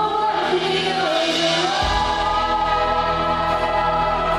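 Live worship song: women singing into microphones over instrumental accompaniment, with a deep bass coming in about two seconds in under a long held vocal note.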